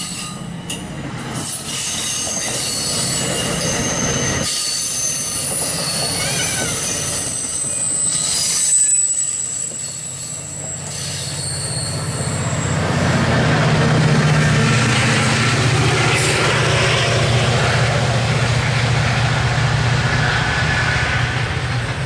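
MARC commuter train of double-deck coaches rolling past at close range, its wheels squealing high-pitched over the rumble of the cars. About twelve seconds in, the rumble grows louder and deeper, with a steady low hum underneath.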